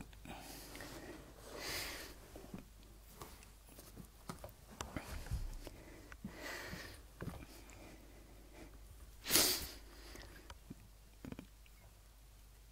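Faint, short sniffs from a person with a cold, three in all, the loudest about nine seconds in, with a few light clicks between them.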